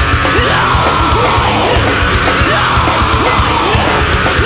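Loud nu metal song with heavily distorted guitars, steady drums and yelled vocals.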